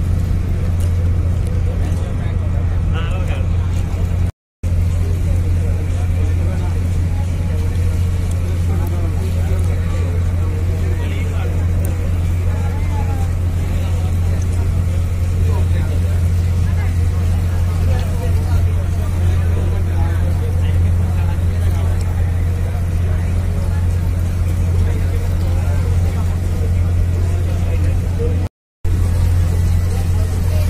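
Steady low drone of a ferry's diesel engine, with faint voices behind it; the sound cuts out for a moment twice.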